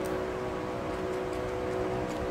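A steady hum with several fixed tones, as from a fan or motor running. There is a single sharp click at the very start.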